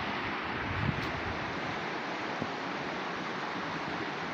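Steady rushing of a river running fast over rocks in white-water rapids.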